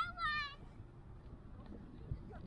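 A child's high-pitched, wavering squeal that ends about half a second in, followed by faint background.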